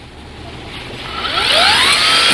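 String trimmer motor spinning up: a whine that starts about half a second in, rises in pitch and loudness for about a second and a half, then holds steady and loud.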